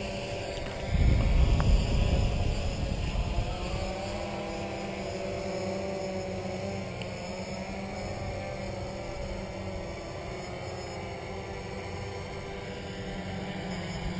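DJI Phantom quadcopter's propellers humming as it flies back and descends toward its take-off point under failsafe, the hum's pitch wavering as the motors adjust. Wind buffets the microphone in a loud gust about a second in.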